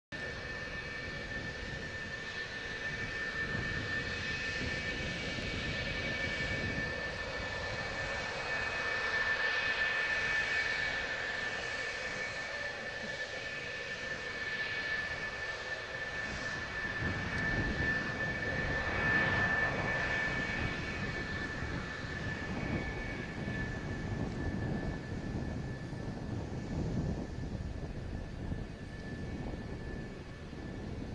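F-4EJ Kai Phantom II fighters' twin J79 turbojets running at taxi power: a steady high-pitched whine over a low rumble. The sound swells twice as the jets roll past, about a third of the way in and again near two-thirds.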